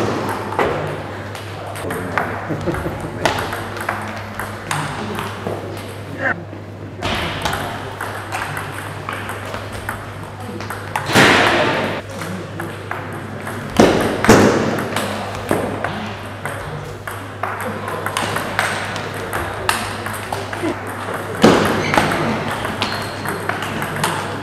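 Table tennis ball being hit back and forth in rallies: a run of sharp clicks as it strikes the rubber-faced paddles and the table, with a steady low hum underneath.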